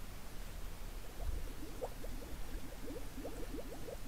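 Plastic bottle held under the water of a pool as it fills: air escapes in a quick run of short bubbling gurgles, starting about a second in.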